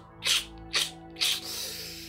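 Soft background music under four short rustling noises about half a second apart, then a longer hiss near the end.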